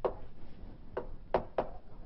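Chalk tapping against a blackboard as an equation is written: four short taps, one at the start, one about a second in, and two close together soon after.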